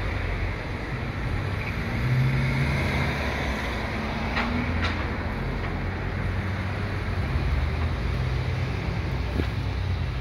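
A steady low engine rumble, a little louder about two seconds in, with two faint clicks near the middle.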